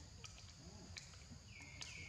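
Faint forest ambience: a steady high-pitched insect drone, with a few soft clicks. Near the end comes a high whistled call that falls in pitch and then holds.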